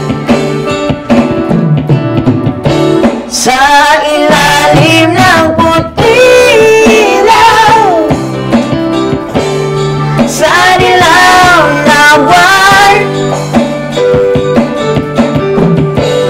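A man singing a song into a microphone while playing a Yamaha electronic keyboard, with sustained chords and a steady accompaniment beat under the vocal phrases.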